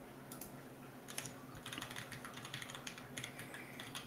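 Computer keyboard typing, faint: a quick run of keystrokes starting about a second in, as a web address is typed.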